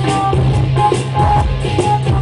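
Live band playing an instrumental passage on keyboard and hand drum, with a steady bass line and regular drum beats.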